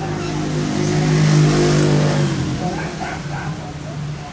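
A motor vehicle's engine passing close by, a steady-pitched drone that swells to a peak about a second and a half in and fades away within the next second.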